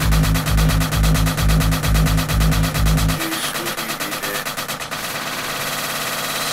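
Techno track playing from a vinyl record: a steady pulsing kick drum and bass line that drop out a little past three seconds into a breakdown, leaving only the higher parts, with a noise sweep building near the end.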